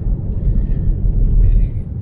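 Steady low rumble of tyre and road noise inside the cabin of a Tesla Model 3 electric car driving on a snow-covered road on winter tyres.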